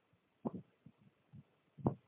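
Two muffled low thumps heard over a telephone line, about a second and a half apart, with a few fainter knocks between them.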